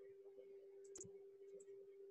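Near silence with a faint steady hum, and a single computer mouse click about a second in.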